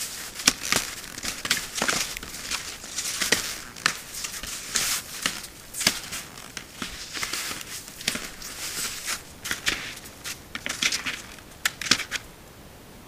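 Irregular crunching and crackling of someone moving about in snow, with rustling, picked up by a trail camera's microphone.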